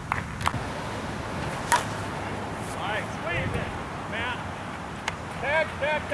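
Distant shouts from players on an outdoor ball field, a few short calls from about halfway through, over a steady outdoor background with a few faint sharp knocks.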